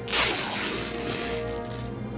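Dry-rotted vintage fabric ripping apart between the hands, one long tearing sound lasting most of two seconds, over background music.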